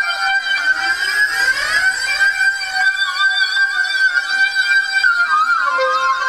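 Korg MS2000 virtual-analog synthesizer playing a custom patch: high held notes with pitch lines that glide up and down and cross one another, with little bass. The glides are strongest early on and again near the end.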